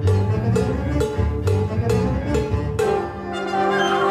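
A concert band of woodwinds, brass and percussion playing a Cuban-styled piece, with a steady percussive beat over a repeating low bass figure. A quick falling run of notes comes near the end.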